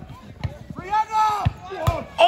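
Footballers shouting on the pitch, one long call about a second in, with sharp thuds of a football being kicked; the loudest thud, near the end, is a shot struck at goal.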